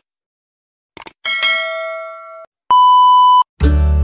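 Subscribe-button sound effects: two quick clicks about a second in, then a bell-like ding that rings out and fades, then a short, steady, loud beep. Near the end, upbeat music with bass and guitar starts.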